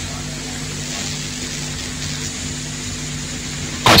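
Steady low hum under a layer of even hiss: the background noise of the recording, with no other sound.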